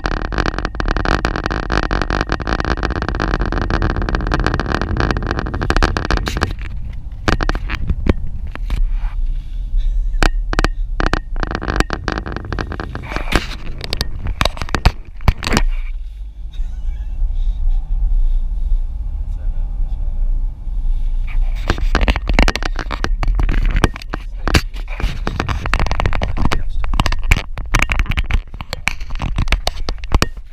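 Car being driven along a road: steady low engine and road noise, with irregular buffeting and knocks on the camera's microphone.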